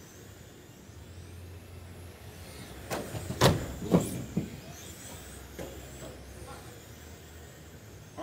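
Electric 1/10-scale radio-controlled USGT touring cars running on an indoor carpet track, their motors giving faint rising and falling whines over a steady low hum. About three and a half to four seconds in come a few sharp knocks, the loudest sounds.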